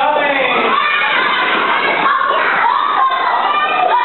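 A group of young children shouting and cheering together, many high voices overlapping at once.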